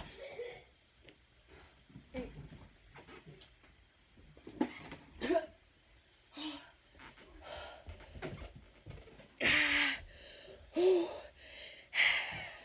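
A boy wheezing, gasping and breathing hard with short groans, reacting to the burn of spicy food; the loudest is a breathy outburst about nine and a half seconds in, followed by a short cry.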